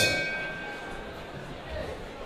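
Fight ring bell struck once, its metallic tone ringing out and fading over about a second.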